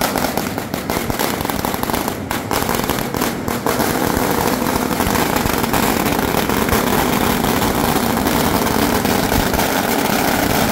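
Strings of firecrackers going off at close range in a continuous rapid crackle of bangs, getting heavier and more even from about four seconds in.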